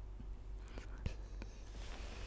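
A woman breathing softly while holding back tears, with a few faint clicks, the clearest about a second in, over a low steady hum.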